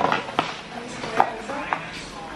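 A few sharp clicks and taps of a clear plastic dessert box being handled, about four in two seconds.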